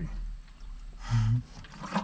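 A man drinking from a plastic gallon water jug, then one short, low, breathy vocal sound about a second in.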